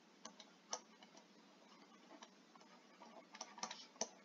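Faint ticks of a stylus tapping on a tablet screen during handwriting: a few scattered clicks, with a quick cluster of them near the end.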